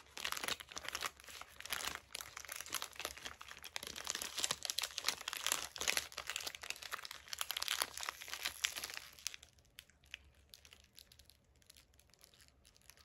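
Paper wrapper of a Creamsicle ice pop crinkling as it is peeled off and bunched around the stick, dying down about nine seconds in.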